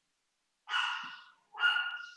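A dog barking twice, about a second apart, heard over a video-call connection.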